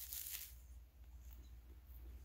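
A bite into a flaky, sugar-crusted Kit Kat Tat pastry: a brief crisp crackle in the first half-second as the layers break, then faint chewing.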